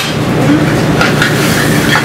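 Steady low roar of a commercial gas range burning on high, with a few light clicks and a spoon clinking in the sauté pan near the end as butter is stirred into the sauce.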